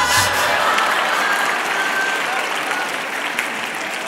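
Audience applauding, loudest at the start and slowly dying down.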